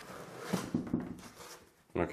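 Faint rustling and scraping of packing foam and a cardboard box being pulled out from inside a 3D printer, with a few light knocks about half a second to a second in.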